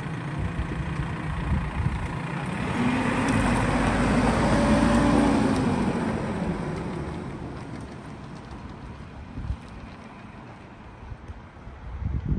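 Red fire-brigade pick-up truck driving past: its engine grows to its loudest near the middle, the pitch rising then falling, and fades away.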